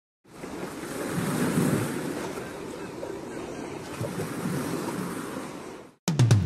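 A rushing noise that swells and eases twice, then fades out just before the end.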